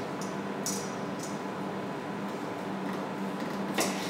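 A knife slicing a radish on a wooden cutting board: a few faint taps of the blade on the board over a steady room hiss and low hum, with a sharper click near the end.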